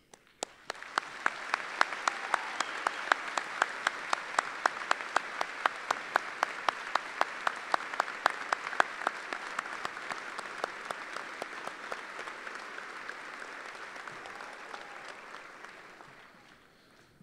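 Audience applauding, with one nearby pair of hands clapping loud and steady about three times a second. The applause swells about a second in and fades away near the end.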